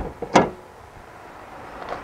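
Rear emergency door of a school bus being shut and latched: a sharp knock at the start and a louder one about a third of a second later, then only faint outdoor background.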